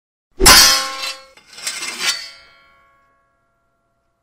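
Sound effect of metal armour crashing down: a loud metallic clang with ringing about half a second in, then a second clatter of smaller clanks about a second later, the ringing fading out soon after.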